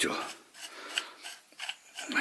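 Steel barrel of a homemade pistol-shaped lighter being turned on its threads against the metal housing: light metal-on-metal scraping with a few small clicks.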